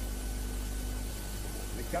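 Steady low hum and hiss from an old 1969 match broadcast recording, with no clear distinct event. A man's voice begins commentating in Spanish right at the end.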